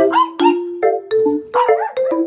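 Marimba-style background music with struck, ringing notes, and over it a toy poodle giving short, high, pitch-bending yips, a couple near the start and more near the end.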